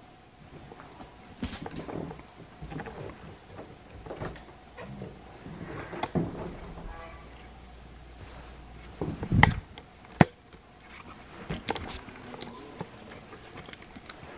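Footsteps and irregular knocks and clicks of someone walking through a house, with a heavier thump about nine seconds in followed at once by a sharp click.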